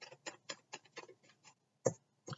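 Tarot cards being handled and shuffled: a run of quick light clicks, about six a second, for a second and a half, then one louder thump near the end.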